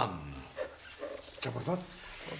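A man's voice: the end of a spoken question, then a short hesitant grunt about one and a half seconds in.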